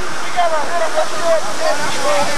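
Steady rushing noise with distant, indistinct voices over it.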